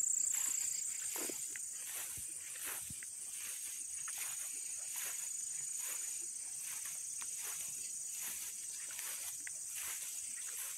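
Steady, high-pitched chorus of insects trilling in the grass and trees, a continuous shrill drone with a fine rapid pulse.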